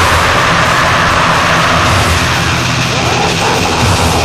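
Lo-fi thrash metal demo recording: the chugging guitar riff breaks off at the start into a dense, steady wall of distorted guitars and drums with a wash of cymbals.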